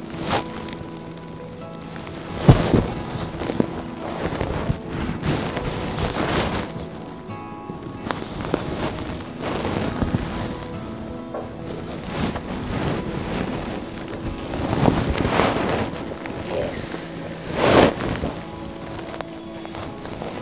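Soft background music, with the intermittent rustle of tussar silk dupattas being spread out and handled, and a brief high hiss about three-quarters of the way through.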